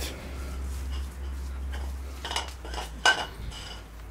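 A few short, sharp clinks with a brief ringing tone, bunched in the second half, over a low steady hum.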